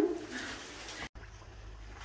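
Quiet ambience with a steady low hum and a dove cooing faintly in the background.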